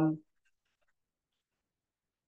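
A man's drawn-out hesitation 'um' trailing off at the very start, then near silence.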